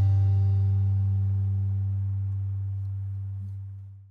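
Final acoustic guitar chord of a folk-rock song ringing out and fading away steadily, with no new notes played.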